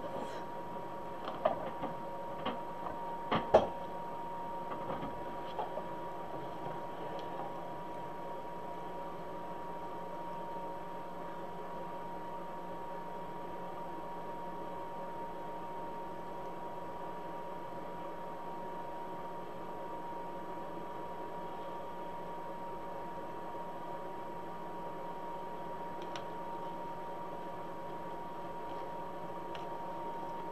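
A few soft clicks and rustles from ribbon pieces being handled in the first few seconds, then a steady faint background hum with a thin, constant high whine.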